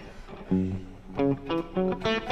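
Kramer electric guitar being picked: a few single notes starting about half a second in, then a quick run of shorter notes.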